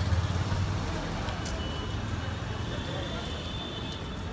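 Street traffic noise with a steady low engine hum, strongest at first and easing off after about a second.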